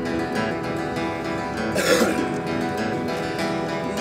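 Acoustic guitar and hollow-body electric guitar strummed and picked together in the intro of a folk-rock song, with a short breathy noise about halfway through.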